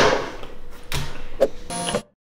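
Edited-in background music ending on a loud hit whose reverberation fades over about a second, followed near the end by a short pitched electronic sound effect.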